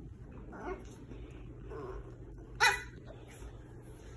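A dog gives one short, sharp bark about two-thirds of the way through, after a couple of softer, quieter vocal sounds during play.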